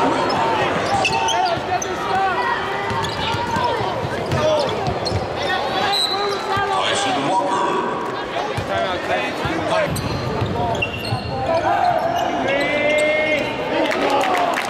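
Live basketball game sound in a large gym: crowd and player voices calling out, with a basketball bouncing on the hardwood court.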